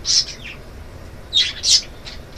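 Breathy, stifled giggling with no voice behind it: a short puff of high, hissy laughter near the start and a couple more about one and a half seconds in.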